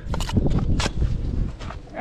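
A steel brick trowel knocking and scraping against a freshly laid clay brick and its mortar bed as the brick is bedded and the squeezed-out mortar is cut off, a few sharp knocks over a low rumble.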